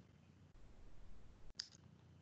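Near silence, with one faint, short click about one and a half seconds in.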